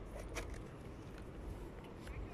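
Faint outdoor ambience: a steady low rumble with a few light clicks early on.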